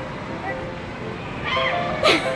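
Mall ambience with faint background music, then a short high-pitched voice with a bending pitch about one and a half seconds in.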